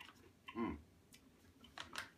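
A man's short 'mm' of tasting, then a few faint, scattered crisp clicks and ticks of snacking: chewing crunchy rice-cracker bites and handling the paper snack pouch.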